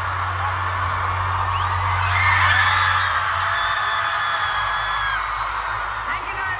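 Concert crowd screaming and whooping over amplified music with a steady deep bass. The screams swell about two seconds in and thin out near the end, and the bass drops away about halfway through.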